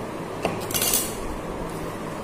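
Hands handling a paper-wrapped cardboard box: a click about half a second in, then a short bright clatter of rustling and clinking just before one second, over a steady low hum.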